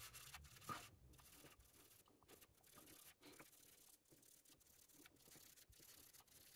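Very faint, irregular rubbing of fingers working a beeswax-based conditioner into a Fender Telecaster's fingerboard, which is dry and being conditioned.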